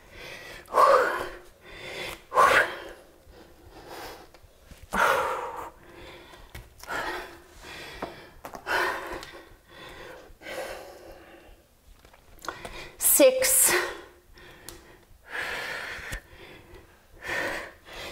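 A woman breathing hard during a fast interval exercise: short, forceful exhalations about every two seconds, the loudest about two-thirds of the way through.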